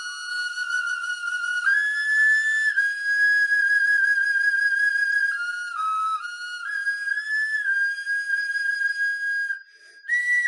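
A small hand-held wind instrument playing a slow, high-pitched melody of long held notes that step up and down. It breaks off briefly near the end, then starts again.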